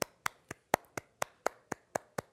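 One person clapping her hands at a steady pace, about four claps a second.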